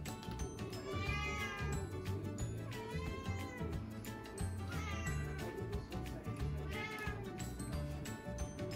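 Domestic cat meowing four times, about two seconds apart, begging for food from a person eating. Background music with a steady beat runs underneath.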